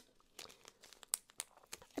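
Small clear plastic zip-top baggies crinkling and rustling as they are handled, with a few faint sharp clicks.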